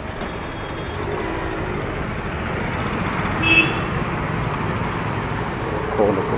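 Steady outdoor road-traffic and wind noise, growing a little louder after about a second, with a short high-pitched toot, such as a vehicle horn, about three and a half seconds in.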